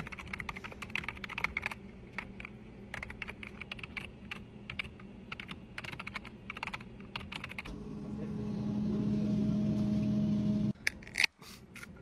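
Typing on a computer keyboard: quick, irregular key clicks for most of the first seven seconds. Then a steady hum swells for about three seconds and cuts off suddenly, followed by a sharp click near the end.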